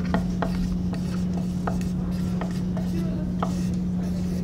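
Marker writing on a laminate school desk: short strokes of the felt tip against the desktop, a few a second, over a steady low hum.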